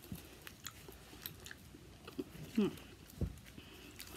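Faint crinkling and clicking of a small candy wrapper being fiddled with by fingers while someone struggles to open it, with a low thump just after three seconds.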